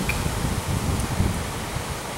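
Wind buffeting the microphone outdoors: a low, uneven rumble that eases a little over the second half.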